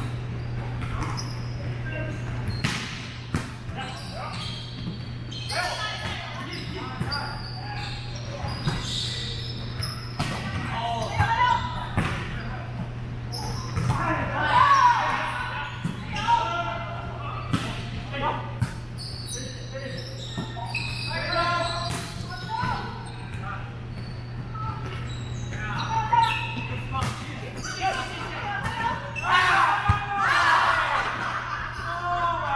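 Indoor volleyball play in a large echoing gym: repeated sharp smacks of the ball being hit and bouncing on the hardwood floor, with players' voices calling out, over a steady low hum.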